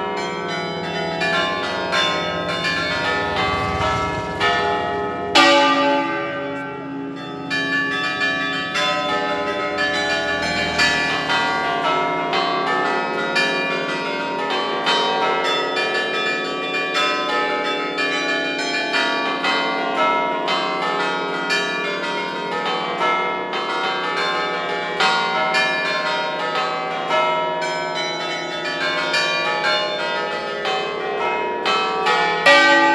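Festive ringing of a twelve-bell peal of bronze church bells (Enrico Picasso, 1931): a rapid, continuous run of strikes on the bells, their tones overlapping and ringing on, with a large bell swinging among them. One especially loud stroke about five seconds in.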